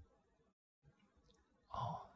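Near silence, then near the end one short breathy exhale into a handheld microphone, like a sigh.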